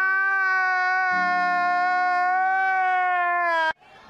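A man's long, loud wailing cry from a crying-face reaction meme, held on one high pitch. It dips slightly before cutting off abruptly near the end.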